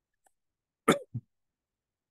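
A man's short cough, in two quick bursts about a second in, with near silence around it.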